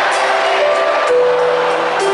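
Live band music played through a concert PA, a melody of held notes stepping from one pitch to the next over the band.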